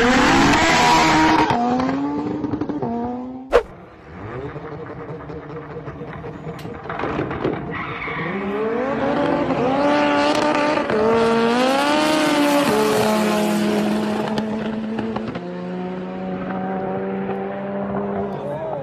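Twin-engine VW Lupo accelerating hard, its engine pitch climbing and stepping through gear changes. After a sharp click, a drag-race car accelerates down the strip, its pitch rising in several sweeps with a drop at each shift, then holding a steady drone near the end.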